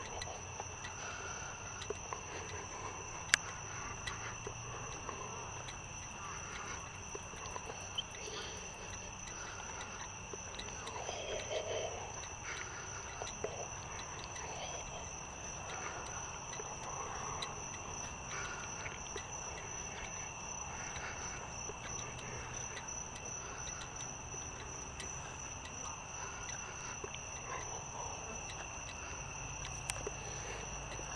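Steady night chorus of crickets, a continuous high trilling at two pitches. A single sharp click about three seconds in is the loudest moment.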